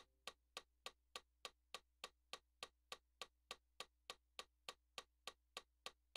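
Faint metronome clicking at a steady, fast tempo, about three and a half clicks a second.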